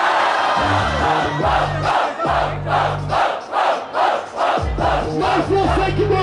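A crowd shouting and cheering over a hip-hop beat with deep bass notes. In the middle the shouts fall into a rhythmic pulse of about three a second.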